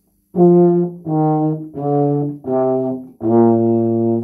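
Tuba played with the valves: five separate sustained notes stepping down in pitch, the last held longest.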